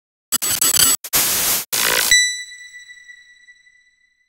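Logo intro sound effect: three loud bursts of hissing, static-like noise with brief gaps between them, ending about two seconds in with a single high bell-like ring that fades away.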